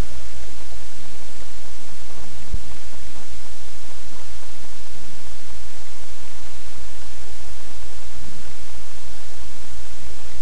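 Steady, loud hiss with a constant low hum underneath: the recording's own background noise, with no other sound standing out.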